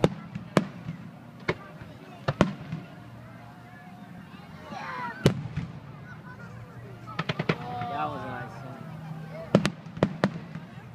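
Aerial fireworks bursting: single sharp bangs a second or more apart, a quick run of crackling reports about seven seconds in, and two bangs close together near the end.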